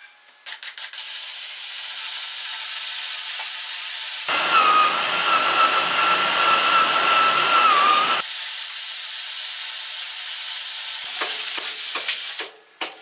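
Cordless drill boring a hole into a hardwood log frame: a steady motor whine with the bit chewing through the wood, starting about half a second in and stopping just before the end.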